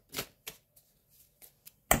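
A deck of tarot cards being shuffled by hand: a few short, quick rustles of cards sliding against each other, with one sharp knock near the end.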